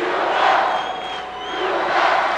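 Large basketball arena crowd yelling and cheering. The noise is loudest about half a second in, eases, then swells again near the end.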